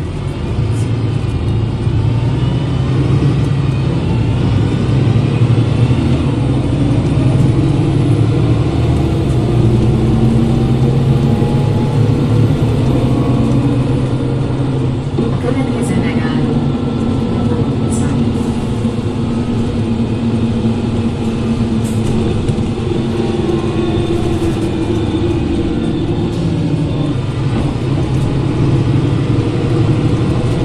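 The Mercedes-Benz OM906 LA six-cylinder turbo diesel of a 2003 Mercedes-Benz O530 Citaro city bus, heard from near the engine, pulling away and running steadily under load through its ZF automatic gearbox. Over the engine note runs a whine that rises and falls in pitch, from a differential that is loud on this bus.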